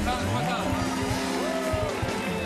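Studio audience clapping and cheering over music with a steady bass line.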